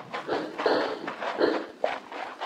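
Radio-drama sound effect of a man panting hard, a string of gasping breaths about every half second to second, as he runs toward the lines, with a few light footfall thuds.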